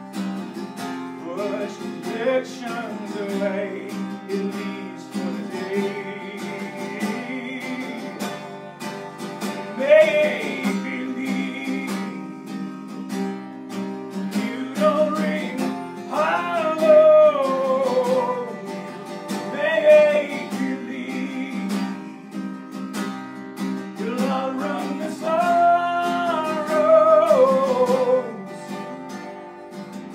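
A man singing over his own strummed acoustic guitar, which is capoed up the neck; the voice rises and falls in long held notes over the steady strumming.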